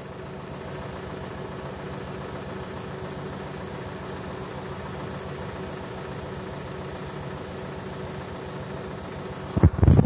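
Farm tractor engine running at a steady, even speed, heard from inside the cab.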